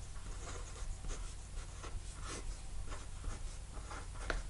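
Fineliner pen writing on a sheet of paper: a run of short, irregular scratching strokes as letters and fraction bars are drawn.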